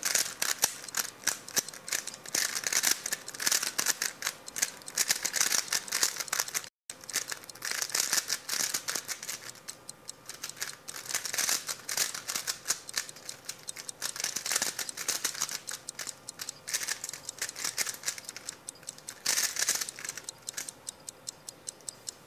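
3x3 speed cube turned rapidly from memory in a blindfolded solve: a dense stream of quick plastic clicks and clacks as the layers snap round, in louder and quieter spurts.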